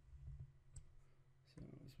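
Near silence with a low hum and a few faint, sharp clicks in the first second, then a man's voice begins speaking near the end.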